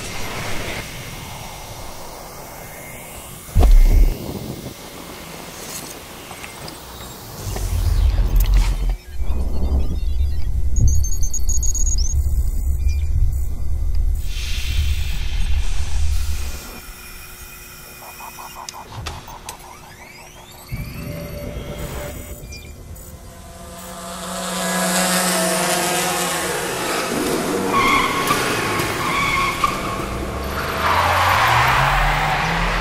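A designed soundtrack for a product advert: sweeping whooshes, a deep boom about four seconds in, and a heavy low rumble through the middle. Near the end it builds into engine revving and tyre squeal, under music.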